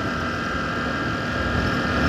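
Engine of the moving vehicle carrying the camera, running steadily at cruising speed, with road and wind noise; the sound stays even throughout.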